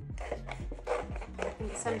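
Sharp scissors cutting through thick watercolor paper, several cuts in quick succession, over background music.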